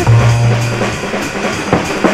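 Hip-hop beat without vocals: drum kit over a deep bass note that is held for about the first second.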